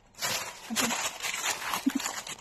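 Plastic shopping bags rustling and crinkling as they are handled and unpacked, with a couple of short vocal sounds.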